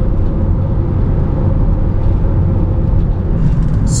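Steady low rumble of road and engine noise inside the cabin of a Toyota van driving along a road, with a faint steady tone over it.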